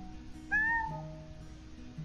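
A house cat crying: one meow about half a second in that rises and falls in pitch. The cat is left alone and is crying at nothing. Soft background music with held notes plays underneath.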